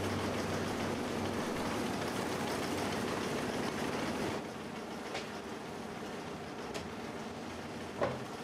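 Cotton-processing machines running with a steady, rhythmic mechanical clatter, a little quieter from about four seconds in.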